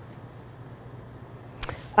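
Quiet room tone with a low steady hum, broken once near the end by a single sharp click.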